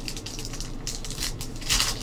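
Foil trading-card pack being torn open and its cards pulled out: small crinkles and clicks, with a louder rustle of the wrapper near the end.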